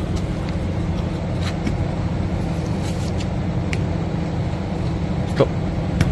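Steel window-scraper blade on a long pole pushed across soapy glass, with a few faint ticks as the blade catches on adhesive residue stuck to the glass. A steady low hum runs underneath.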